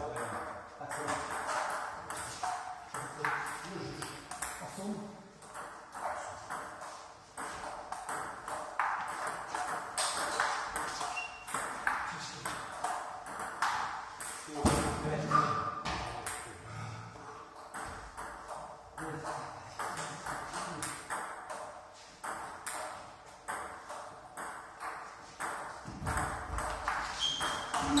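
Table tennis rallies: the ball clicking off the paddles and bouncing on the table, many quick sharp taps in irregular runs.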